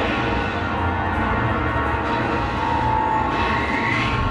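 Film soundtrack of a large starship in space: a deep, steady engine rumble under dramatic music. A rising whine comes in near the end.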